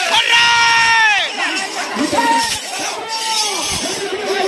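Crowd of men shouting and cheering at a bull let loose into the lane. One long yell is held through the first second and falls off at its end, followed by shorter shouts.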